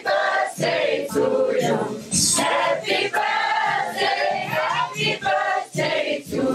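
A group of voices singing together in chorus.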